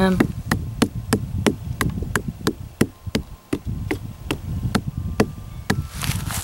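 A watermelon being tapped on its rind, an even series of short knocks at about three a second: the thump test for ripeness.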